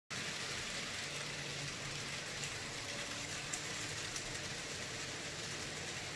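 Model trains running on a small tabletop layout: a steady whir of small motors and wheels on the track, with a few faint clicks.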